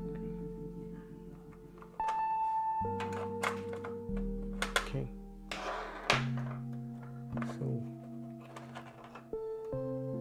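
Background music of held notes that change every second or so, over a few light clicks and knocks and a short scrape from unscrewing and lifting off a motherboard's metal M.2 slot cover.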